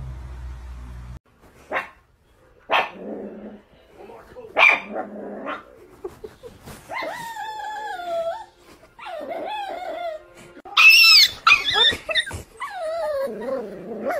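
A dog barking and vocalising: a few short, sharp barks, then longer whining, howl-like calls that waver and fall in pitch, with the loudest bark about eleven seconds in.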